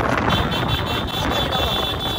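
Wind and road noise on a moving motorcycle, a steady rushing rumble with no speech. A steady high-pitched tone rings over it from about a third of a second in.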